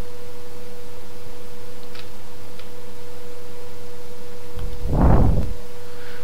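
Steady electrical hum with a constant tone in the recording, with two faint clicks about two seconds in. Near the end comes a brief wordless voice sound, under a second long.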